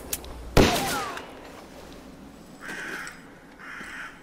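Sound effects in a Western-themed scene: one sharp bang with a short ringing tail about half a second in, then two short harsh calls near the end.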